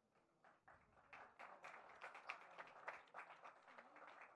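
Faint, scattered audience applause: light hand claps that start sparsely and thicken about a second in.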